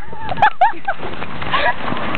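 A high-pitched human voice giving several short squealing cries in quick succession within the first second, over steady background noise.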